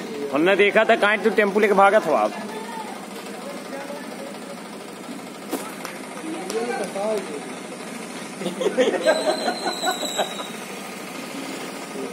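People talking in bursts, loudest in the first two seconds and again near the end, over a steady background hum.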